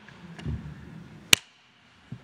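A brief low rumble, then a single sharp click about a second and a half in, the loudest sound here.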